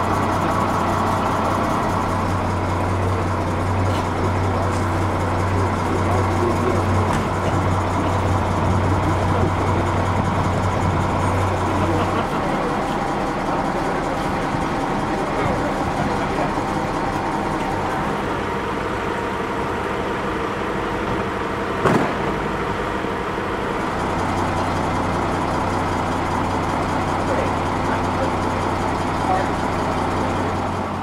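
A vehicle engine idling with a steady low hum, which drops away for a stretch in the middle and returns near the end, under indistinct voices. A single sharp knock comes about two-thirds of the way through.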